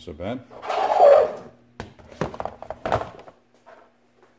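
Clear plastic storage-container lid being slid and turned over on a workbench: a short scraping rustle about a second in, then a few sharp knocks of plastic against the bench.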